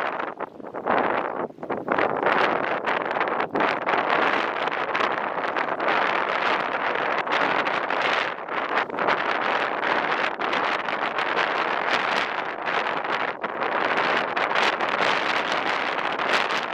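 Strong wind buffeting the microphone: a continual gusting rush, with brief lulls in the first couple of seconds.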